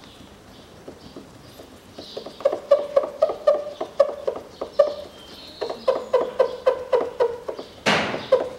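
Rag rubbed hard back and forth on glossy car paint, squeaking with each stroke at about three squeaks a second, as adhesive residue left by removed badge letters is wiped off; there is a short pause midway. A single sharp click comes just before the end.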